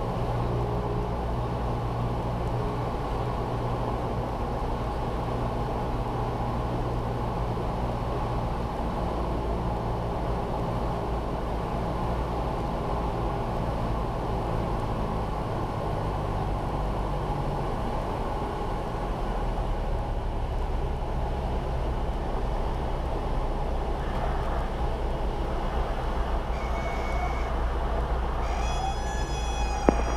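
Cessna 172's engine and propeller droning steadily, heard inside the cabin, the pitch stepping down a couple of times as power comes off for the landing and rollout.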